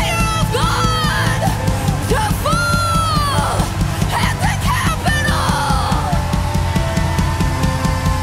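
Live worship band playing loud, full music with a steady drum beat and held chords. High, sliding shouted vocal cries ring out over it for the first few seconds, with one falling cry about five seconds in.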